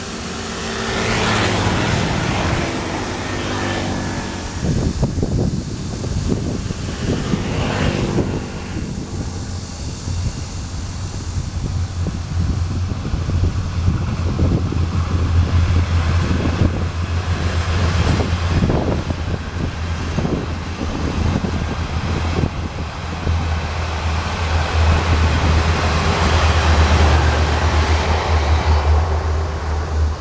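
A Taiwan Railways DR2800 diesel multiple unit runs past at speed. A heavy, steady diesel rumble grows with a rhythmic wheel-on-rail beat as the cars go by, and stays loud until it drops away just before the end.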